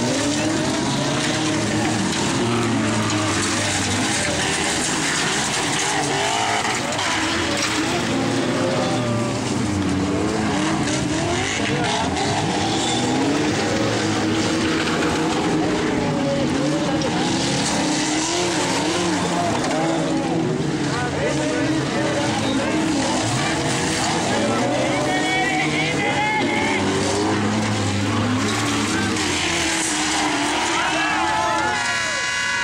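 Several unmodified stock cars racing together on a dirt track, their engines running hard in a dense mix of pitches that rise and fall as the drivers rev and lift off.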